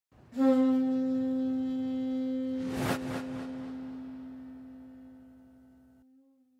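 A conch shell trumpet (pū) blown in one long held note that sets in sharply and then slowly fades away, with a brief whooshing rush about three seconds in.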